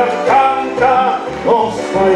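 Man singing live into a handheld microphone through a PA with musical accompaniment; three short sung phrases each swoop up into the note.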